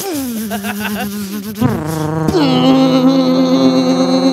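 A man imitating a machine with his voice as it starts up and runs. A falling whine settles into a steady droning hum, and a higher drone joins a little over two seconds in.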